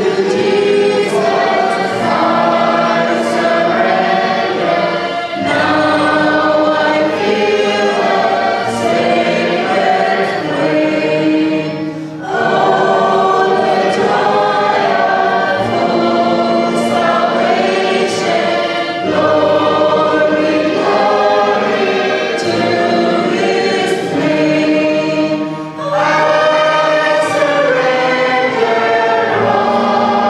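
Congregational worship song: many voices singing together, led by a woman's voice on a microphone, with electronic keyboard accompaniment. The singing comes in phrases with brief breaks about every six or seven seconds.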